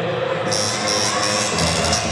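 Latin dance music starting over the hall's loudspeakers, the higher instruments coming in about half a second in and the bass beat near the end, with a crowd cheering.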